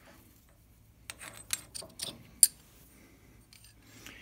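A drill chuck on a lathe tailstock being loosened by hand and a twist drill bit drawn out of it: after a quiet first second, a few small metallic clicks, the sharpest about two and a half seconds in.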